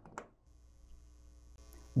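A short click or two as a patch cable's jack plug is pushed into a modular synthesizer's input jack. Then faint steady electrical hum.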